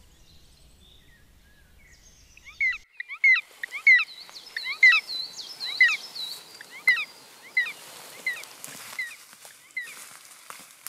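A small bird calling: a quick run of short, sweeping whistled notes that starts about three seconds in, loudest in the middle and thinning out toward the end.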